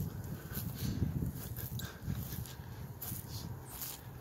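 Wind buffeting the microphone in an uneven rumble, with scattered crackles of footsteps on dry leaf litter and brush.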